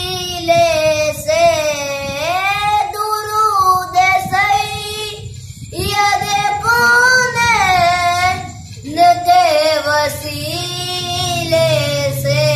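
A boy singing a naat, an Urdu devotional song in praise of the Prophet, in long held lines whose pitch bends and ornaments each note. The singing breaks off briefly twice, about five and a half and nine seconds in.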